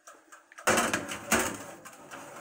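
Metal baking tray scraping and clattering as it is slid into a toaster oven on its wire rack. It starts about two-thirds of a second in, with a few sharp knocks along the way.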